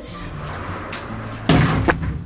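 A closet door being slammed as it is pushed open: a heavy bang about one and a half seconds in, followed by a sharp knock a moment later.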